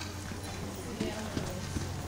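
Hooves of quarter horses passing close on the arena's dirt footing, with a few distinct hoof thuds about a second in, over background voices.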